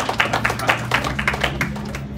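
Audience applause in a meeting room: many hands clapping, with uneven claps that thin out near the end.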